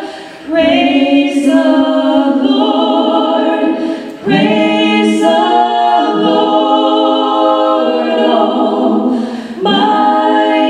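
Three women singing in harmony into microphones without accompaniment, in long held phrases with short breaks for breath about half a second in, about four seconds in and near the end.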